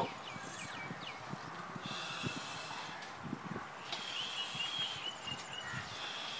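Faint bird calls: a high, rapidly repeated chirping trill in two spells, one about two seconds in and a longer one about four seconds in, with a few faint low taps beneath.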